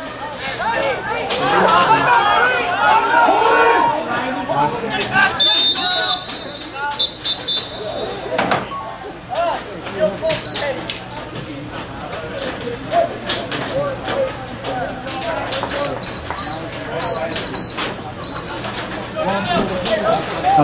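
Indistinct voices of players and spectators talking and calling out, the words not clear. Short high-pitched electronic beeps come in a few seconds in and again as a quick run of beeps in the last few seconds.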